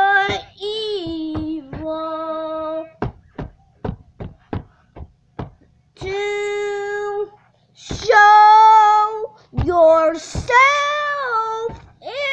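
A child singing without accompaniment, in long held notes that bend at their ends. Midway there is a quick run of sharp taps between the sung phrases.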